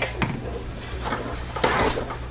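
A silicone spatula stirring soap batter in a plastic tub: a soft knock, then short scrapes about a second in and again near the end.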